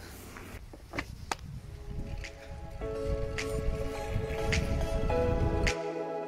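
Background music with a steady beat coming in about halfway, over a low rumble of wind on the microphone from riding a bike; the wind rumble cuts off suddenly near the end, leaving only the music.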